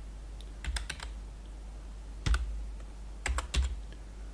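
Keystrokes on a computer keyboard typing a short numeric code. The clicks come in three groups: a quick run of keys about a second in, a single key past two seconds, and a few more near the end, over a steady low hum.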